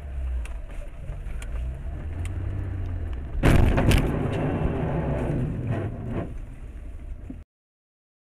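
Car engine and road noise heard from inside a car, broken about three and a half seconds in by a loud, half-second crash with two sharp strikes, the sound of a collision. The sound cuts off suddenly near the end.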